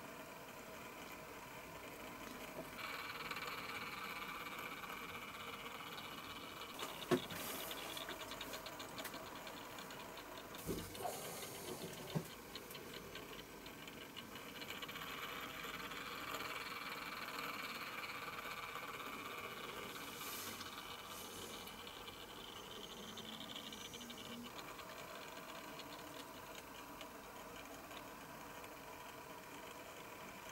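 Faint steady whirring and rattling of a small motorized display turntable turning. There are a few sharp clicks about seven seconds in and again around eleven to twelve seconds in.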